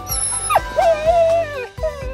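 Pit bull whining in excitement: a short sharp whine about half a second in, then a longer, held whine that falls away, and another starting near the end.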